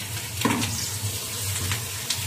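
Egg, green pepper and sausage sizzling in a hot steel wok, a steady hiss, while a spatula stirs them, with one brief louder sound about half a second in.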